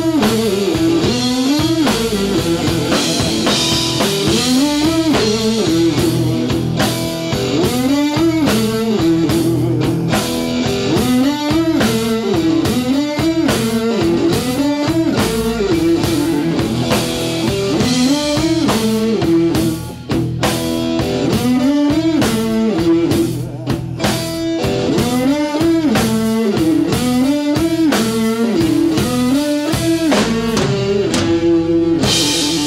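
Live blues band playing: electric guitar working a repeating riff over a drum kit.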